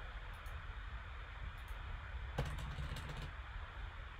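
Faint clicks from computer controls: a couple of single clicks early on, then a quick cluster of clicks about two and a half to three seconds in, over quiet room tone.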